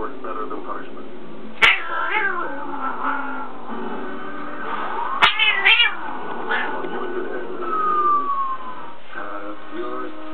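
Cat crying out in sharp meows, one burst about one and a half seconds in and another around five seconds in, as one cat pounces on another hidden under a bedsheet. A television plays speech and music underneath.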